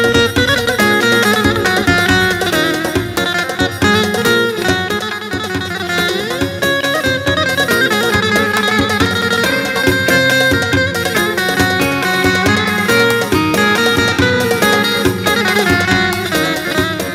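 Instrumental break of a Turkish folk song: an electric bağlama (saz) plays runs of plucked notes over keyboard backing, with no singing.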